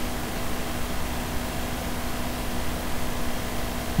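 Steady background hiss with a faint, steady low hum: room tone and microphone noise, with no other event.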